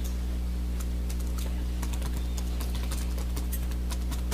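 A steady low hum with scattered light clicks and taps throughout.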